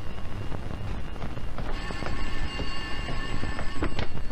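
Music with long held high notes over a dense low rumble, with a few sharp clicks. The held notes break off briefly just before two seconds in.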